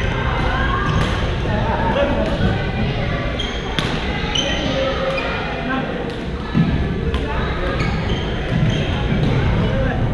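Badminton play in a reverberant sports hall: repeated sharp racket hits on shuttlecocks and short sneaker squeaks on the court floor, over constant background chatter from players on the other courts.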